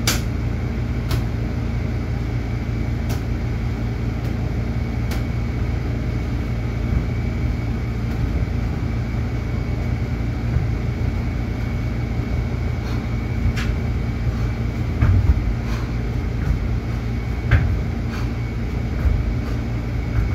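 Steady low machine hum with a faint high whine over it, like room air-conditioning or gym equipment running. A few light knocks and taps come through it, with some duller thumps in the second half.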